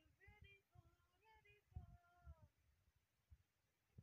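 Near silence, with a faint voice coming and going in the background.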